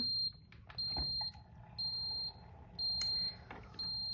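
A kitchen appliance's electronic beeper sounding repeatedly: a high single-pitched beep about once a second, each lasting about half a second, over a faint hum. A soft thump comes about a second in.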